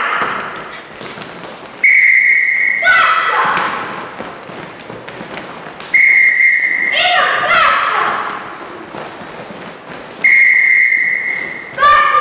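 Three blasts on a whistle, each held about a second, roughly four seconds apart. After each, children's voices call out, with thuds of feet on a hall floor.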